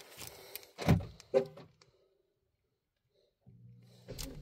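Two knocks about half a second apart from handling inside a car's cabin while reaching for the key fob, then near silence and a faint low steady hum starting near the end.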